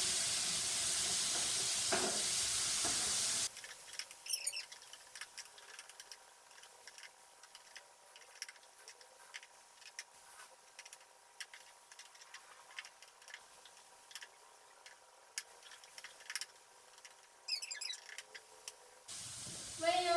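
Chopped tomatoes sizzling in a hot pan for the first few seconds. Then the sizzle drops away suddenly, leaving scattered light clicks of chopsticks stirring against the pan.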